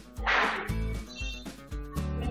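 Background music from an online quiz game, with a steady low beat about twice a second, and one brief loud burst of noise about a quarter of a second in.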